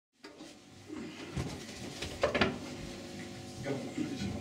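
Low room noise in a small venue, with a few short knocks and clatters, the loudest a couple of seconds in.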